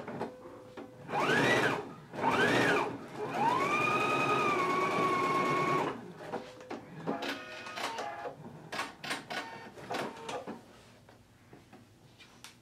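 Electric sewing machine stitching a seam in short runs: twice the motor whines up and back down, then a longer run climbs and holds steady for about two seconds. After that come scattered clicks and ticks as it stops and starts, and it goes quieter near the end.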